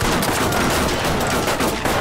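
Rifle fire from many guns at once: a dense, overlapping fusillade of shots in rapid succession.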